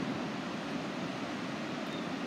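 River water pouring over a low dam, a steady, even rush of whitewater.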